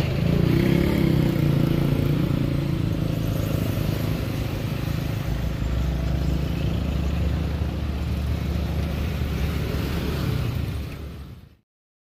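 Road traffic: cars and motorcycles passing close by with their engines running, a steady low engine rumble under road noise. It fades out shortly before the end.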